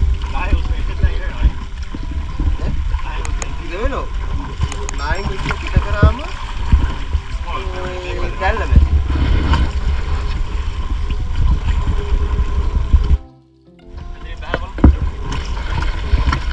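Wind buffeting the microphone with a steady low rumble, under people's voices talking. The sound drops out briefly about three-quarters of the way through.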